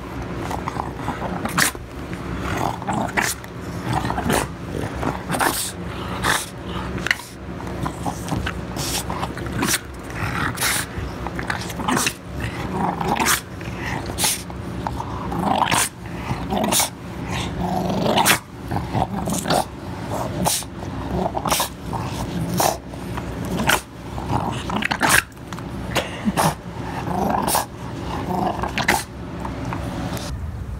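French bulldog growling in short bursts as it chews a toy, with frequent sharp clicks throughout.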